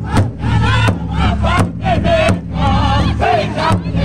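Powwow drum group singing in high, wavering voices together over a large powwow drum struck in a beat by several drummers with padded sticks.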